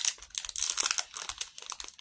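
Candy wrapper crinkling in the hands as it is worked open, a dense irregular run of crackles.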